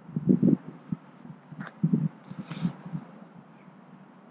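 Soft, irregular footsteps and handling thumps from a handheld camera being carried a few steps, with a couple of faint, brief higher sounds.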